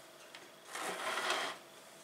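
Handling noise on a table: one soft scraping rustle lasting a little under a second, as tableware is moved.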